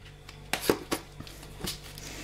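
A handful of light clicks and taps from a plastic jar of mixed seeds being handled over a glass salad bowl, over a steady low hum.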